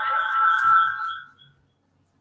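A held high musical tone, steady in pitch, fading out about a second and a half in and leaving silence.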